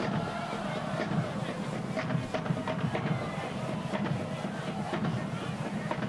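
Football stadium crowd: many voices chattering and calling at once, with scattered short knocks or claps.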